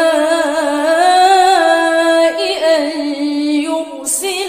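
A single voice chanting Quran recitation unaccompanied, drawing out long held notes with wavering, ornamented turns in pitch.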